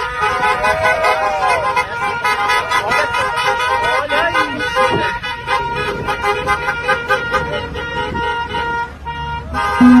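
Several car horns honking at length over a shouting, cheering crowd, with a whooping voice rising and falling about a second in.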